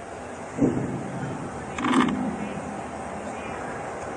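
Indistinct, off-microphone voice of a woman in the audience asking a question, faint under a steady hiss, with two short louder sounds about half a second in and at two seconds.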